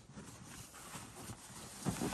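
Faint rustling and scuffing of people shifting on dry leaves and crash pads, with one sharper knock near the end.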